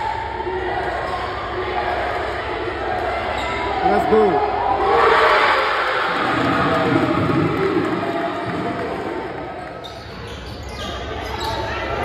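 Basketball game sound in a gym: a ball dribbling on the court amid crowd voices and shouts, louder from about four to nine seconds in.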